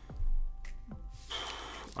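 A man takes a quick, noisy breath in the second half, with quiet background music.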